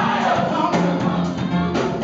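Gospel choir singing together, many voices at once.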